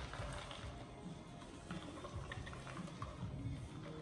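Chopped pecans poured from a plastic container into a bowl: a faint patter of small pieces landing, over a low steady hum.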